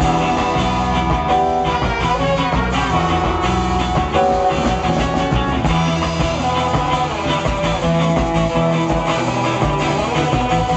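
Live ska band playing a ska tune with a Balkan flavour: horn section of trumpet, saxophone and trombone over electric guitar, drums and keyboard, loud and steady through a PA.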